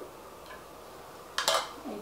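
A kitchen utensil clatters once, briefly and sharply, against the counter about one and a half seconds in, after a quiet stretch.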